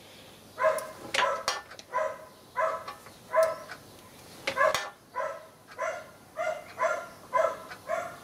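A dog barking over and over, roughly one to two barks a second, starting just under a second in. A couple of sharp clicks come between the barks.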